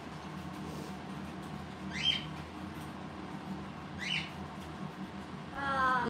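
Parrot giving two short, rising squeaks, about two seconds apart.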